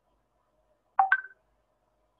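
A short electronic two-note blip about a second in: a lower tone stepping up to a higher one, like a computer notification chime.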